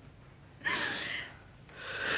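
A woman crying with two sharp, gasping sobs: one about half a second in, the other starting near the end.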